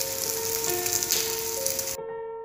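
Slices of glutinous rice frying in oil in a pan, giving a steady sizzling hiss. Background music of simple held notes plays over it.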